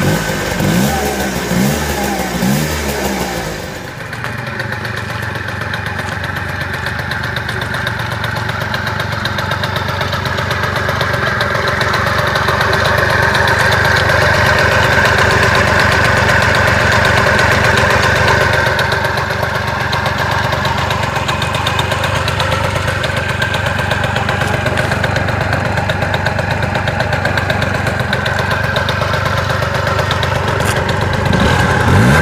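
Honda Dio 50cc two-stroke scooter engine running on a Stihl MS 180 chainsaw carburetor that still needs tuning. It is revved up and down a few times in the first few seconds, then runs steadily, louder through the middle stretch.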